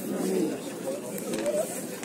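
Indistinct background chatter of people talking, with no single clear voice.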